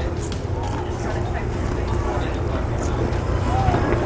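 Outdoor fairground background: a steady low mechanical hum with faint, distant voices of people around.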